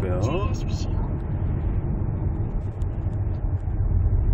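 Steady low rumble of road and engine noise inside the cabin of a Ford Explorer with the 2.3-litre turbocharged four-cylinder petrol engine, cruising on the road.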